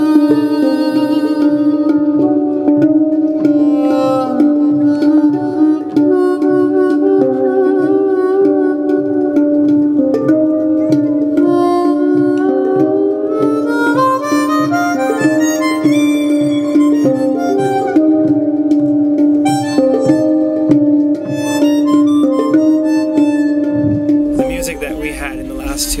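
Jaw harp (mouth harp) playing: a steady drone with an overtone melody that shifts above it, plucked in a regular pulse about twice a second. In the middle the overtones sweep upward and back down.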